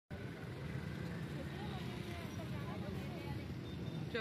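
Street ambience: a steady low engine rumble from traffic, with faint distant voices.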